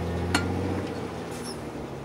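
Rock-crawling Jeep's engine running low and steady, easing off a little under a second in, with one sharp metallic clink about a third of a second in.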